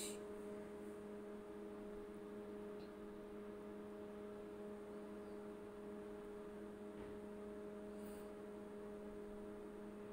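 Multi-function microwave oven running its cool-down cycle after grilling: a steady, even hum from its cooling fan.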